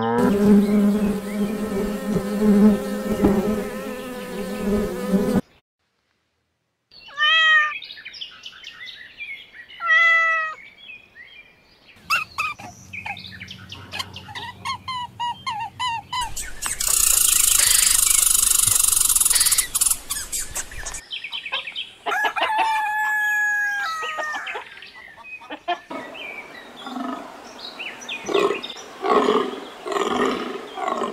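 A Hereford bull mooing in one long, low call that cuts off abruptly about five seconds in. After a moment of silence comes a string of different short animal calls and chirps, with a burst of high hissing buzz in the middle.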